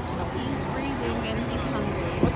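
Indistinct voices talking over a steady low rumble of outdoor city background noise.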